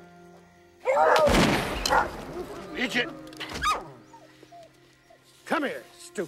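A pack of hunting hounds barking and baying over a film score of steady held notes. The loudest burst of calls comes about a second in, with shorter barks later.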